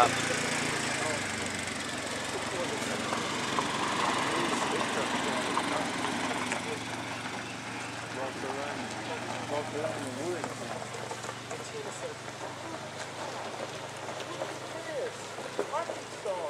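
Outdoor sound fast-forwarded at ten times speed: a dense, steady hiss with brief garbled, chattering voice-like fragments, slowly getting quieter.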